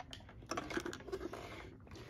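Scraping and rustling handling noise as a plastic ENTel TLF 300 telephone is turned over on a wooden desk with its cords, starting about half a second in.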